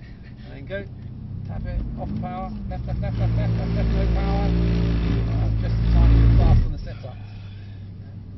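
Mercedes-AMG C63 S's 4.0-litre twin-turbo V8 heard from inside the cabin, pulling under throttle and growing steadily louder, loudest about six seconds in, then dropping away abruptly near the end as the power comes off.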